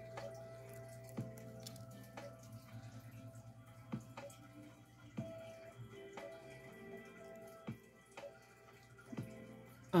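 Quiet background music with held notes, with a few faint clicks and taps from hands handling a nail strip and scissors.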